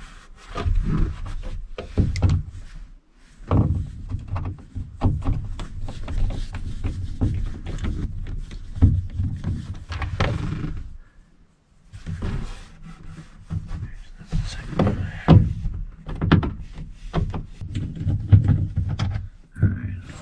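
Screwdriver backing screws out of the bottom of a 1973 GMC truck's door panel: irregular clicks, scrapes and knocks of metal on screws and panel, with a short pause about eleven seconds in.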